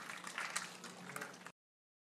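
Faint room noise with a steady low hum and a few scattered clicks, cutting off abruptly to silence about one and a half seconds in.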